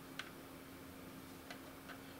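A few faint single clicks from working a computer, three in all spread across two seconds, over a low steady hum.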